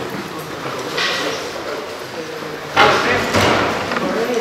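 Indistinct voices of people talking in a room, with a sudden loud thump or scrape a little under three seconds in that dies away within about a second.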